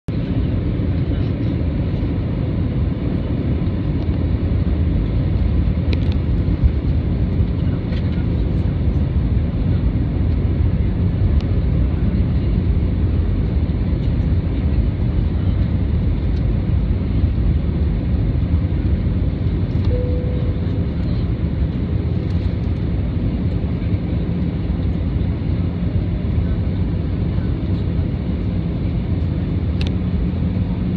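Steady cabin noise inside an Airbus A320 descending on approach: the jet engines and the airflow past the fuselage make a constant, deep rush.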